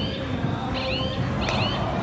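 Athletic shoes squeaking on the synthetic court mat as players move, two short high squeaks over a steady murmur of background noise.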